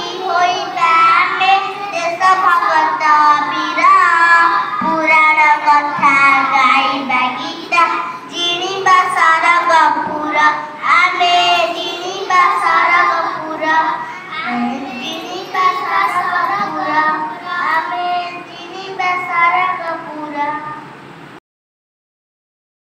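A group of young girls singing an Odia song together. The singing stops suddenly near the end.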